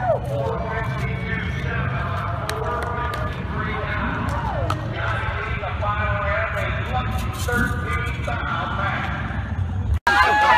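Indistinct talking from several people, no single voice clear, over a steady low hum.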